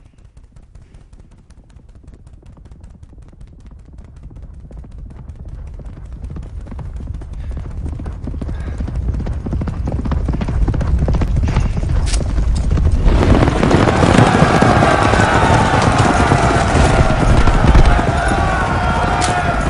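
Hoofbeats of galloping racehorses, a dense rapid clatter over a low rumble, growing steadily louder as the horses approach. From about two-thirds of the way in, a shouting crowd joins in loudly.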